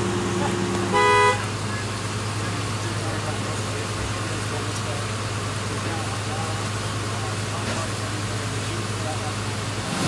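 A short vehicle horn toot about a second in. It sits over the steady low hum of idling vehicles at the roadside.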